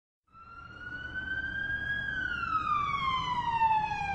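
A siren wailing, fading in: its pitch rises slowly for the first couple of seconds, then falls, over a low steady rumble.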